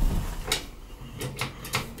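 A few short sharp clicks over a low steady hum inside a 1972 Valmet-Schlieren traction elevator car.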